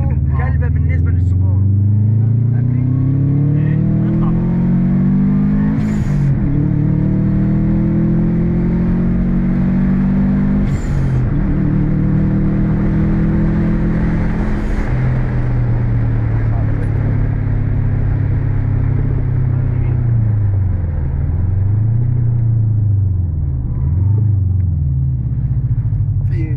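Subaru Impreza WRX STi's turbocharged flat-four heard from inside the cabin, pulling hard through the gears. The engine note climbs and falls away at three gear changes, about six, eleven and fifteen seconds in, with a short rush of noise at each change. It then holds a steady note, dipping and rising again a few times near the end.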